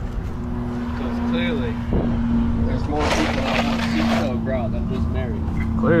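A motor running steadily with a low hum, under people talking. About halfway through there is a rush of noise lasting about a second.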